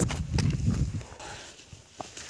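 Footsteps on dry, stony dirt while climbing a steep slope, a few heavy steps in the first second, then quieter, with a low rumble on the microphone.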